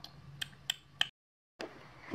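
Handling noises as paper toy food is pressed against a plastic doll: four light clicks about a third of a second apart over a faint low hum, cutting off suddenly just after one second.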